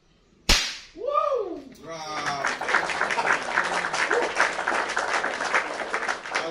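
A single sharp crack of an airgun shot about half a second in, the pellet knocking the right-hand matchstick off the target. An exclamation follows, then a long burst of excited cheering and clapping.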